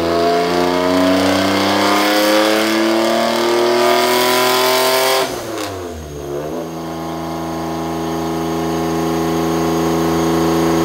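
1992 Dodge Stealth Twin Turbo's 3.0-litre twin-turbo V6 in a wide-open-throttle pull on a chassis dyno, its pitch climbing steadily for about five seconds, boosting only to its 20 psi wastegate spring pressure. About five seconds in the throttle closes and the revs fall away quickly, and the engine then settles into a steady idle.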